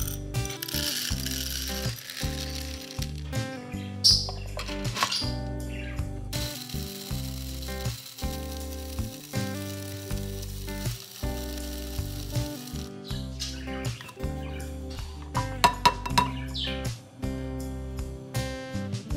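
Background music throughout. Under it, an electric blade coffee grinder runs for about six seconds from around the middle, grinding dried chickpeas into flour, with a few sharp clicks near the end.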